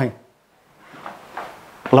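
A man's voice breaks off, then, after a brief silence, faint handling and rustling sounds as a paper booklet is lifted from a table, before his speech resumes at the very end.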